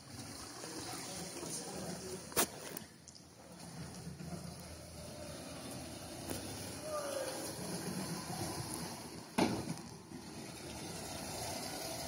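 Canal water sloshing and lapping, with a motorboat running close by. Two sharp knocks stand out, about two and a half and nine and a half seconds in.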